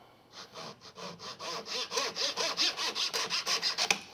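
Fine-toothed hand saw cutting across a thin wooden strip, rapid short back-and-forth strokes, about five a second, starting about half a second in and stopping just before the end.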